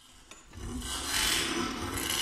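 Baritone saxophone sounding a loud, rasping, airy noise rather than a clear note, an extended playing technique. It comes in about half a second in and swells.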